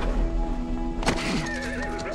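Sustained trailer music with a horse whinnying over it about a second in, a wavering high call.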